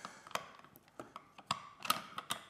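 Plastic puzzle pieces and small wooden toy trucks knocking lightly against each other and the table as the pieces are fitted into the trucks' clear cargo boxes: four separate small clicks, roughly half a second apart.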